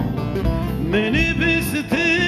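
Live male singing of a folk song with instrumental accompaniment: a short instrumental passage between sung lines, with the voice coming back in during the second half.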